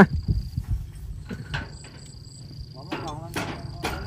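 A tractor's diesel engine idling low and steady, with a few light metal knocks from the trailer's gear and faint voices near the end. A thin, steady high insect drone runs over it.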